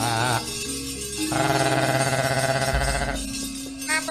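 Javanese gamelan music with held pitched tones over steady low notes. A singer's wavering line ends just after the start, and a deep low stroke sounds near three seconds in.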